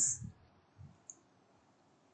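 Quiet room tone with a faint hiss, with one faint short click about a second in.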